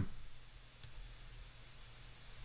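A single faint computer mouse click a little under a second in, over a low steady hum.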